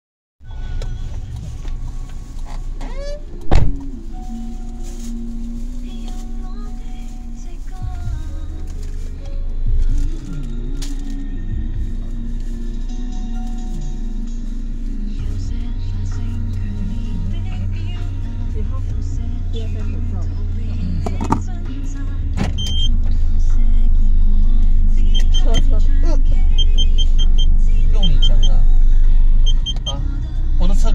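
Car idling, heard from inside the cabin as a steady low rumble, with music playing over it. A single sharp knock comes about three and a half seconds in, and everything grows louder in the last seven seconds.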